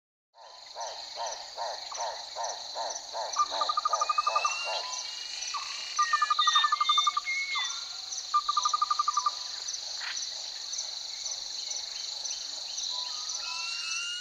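Wild nature ambience of insects and birds: a steady high insect drone throughout, with a call repeated about three times a second for the first few seconds. Three rapid trilled bursts of birdsong and several short rising whistles follow.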